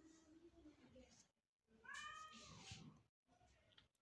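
A single faint cat meow about two seconds in, one call that rises and then falls in pitch, against near silence.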